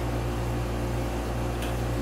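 Steady low hum with a faint hiss over it: room tone, unchanging throughout.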